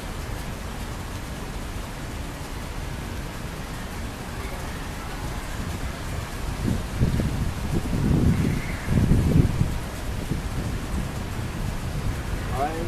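Outdoor background hiss with wind buffeting the microphone in low rumbling gusts, loudest a little past the middle.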